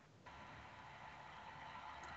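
Near silence: faint steady background hiss of room tone, after a brief total dropout at the very start.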